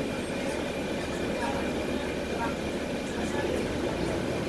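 Inside the cabin of a NABI 416.15 transit bus moving slowly in traffic: a steady low diesel engine and road rumble.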